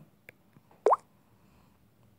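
A single short, rising 'plop' tone from the Hike messenger app on an Android phone about a second in, as the chat theme change goes through. It is preceded by a faint tap.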